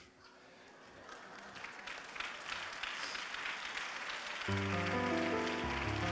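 Congregation applauding, the clapping swelling gradually louder, with a sustained musical chord coming in about four and a half seconds in.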